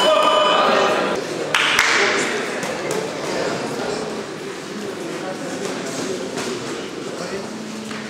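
A boxing ring bell ringing with a steady metallic tone that stops about a second in, as the bout is stopped, followed by a sudden burst of noise and the murmur of spectators' voices in a large hall.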